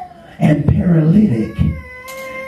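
A man's voice delivering a loud, drawn-out, sung-out cry into a microphone, its pitch bending, rather than ordinary speech. A steady high held tone sets in near the end.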